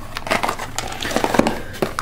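Cardboard boxes of shotgun shells being handled and shuffled in a storage case: a run of irregular light clicks, taps and rustling.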